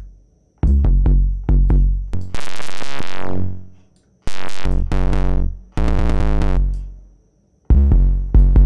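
A distorted 808 bass line played on its own: a run of deep notes with a gritty, buzzing upper edge, two of the longer ones sliding down in pitch, with short silences between phrases. It runs through the TrapDrive distortion plugin while its distortion type is being switched.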